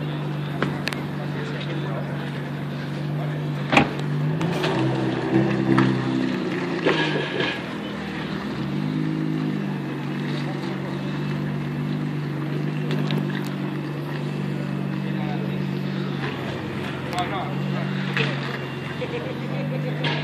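Nissan GT-R's twin-turbo V6 running at low revs as the car creeps forward, its pitch stepping up and down between about four and nine seconds in, then steady again. A single sharp knock sounds about four seconds in.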